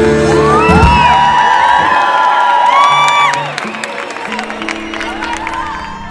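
Live rock music ending on a held chord while a concert crowd cheers, whoops and whistles; the cheering dies down about three and a half seconds in, leaving the music quieter.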